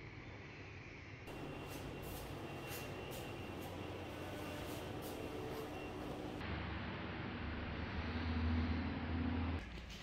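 Faint indoor background noise with a low hum, which changes abruptly twice where the clips are cut together. The middle stretch carries a few faint ticks, and the hum grows louder near the end.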